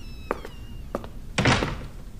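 Footsteps of hard-soled shoes clicking across a polished stone floor, about two steps a second, with a thin, high, falling squeak near the start. A louder thump comes about one and a half seconds in.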